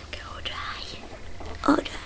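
Soft whispering, breathy and hushed, with one brief louder sound about three-quarters of the way in.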